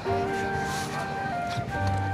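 Background music: slow, sustained notes over a low bass, changing note every second or so.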